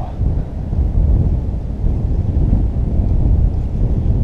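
Wind buffeting an action camera's microphone on open water: a loud, steady low rumble.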